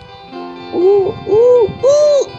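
Three loud wailing crying sounds, each rising and then falling in pitch, one after another over steady background music.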